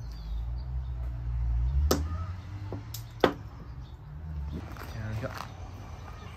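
Hand-spun string whirligig toys whirring as they are pulled and let wind back up, with a low hum and three sharp clicks about two to three seconds in.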